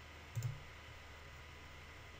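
A single computer mouse click about a third of a second in, over a faint steady background hum.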